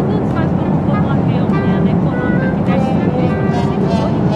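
Steady, loud low drone of an airliner cabin, with short music notes laid over it.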